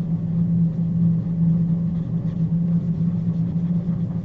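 A steady low hum with no speech over it, the constant background noise of the recording.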